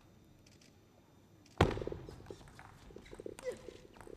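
A table tennis rally's sounds: a few faint taps, then a sharp, loud crack about one and a half seconds in, followed by shouting voices and crowd noise.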